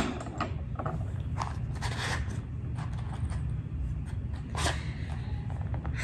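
Small handling sounds as a candle snuffer is set down on the floor and a matchbox is handled: a scatter of light clicks and scrapes, with one sharper scrape about two-thirds of the way in, over a steady low hum.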